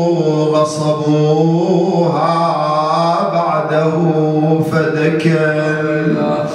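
A man chanting a solo Arabic elegy (ritha) into a microphone, in long held, wavering notes, with a brief breath break about two seconds in.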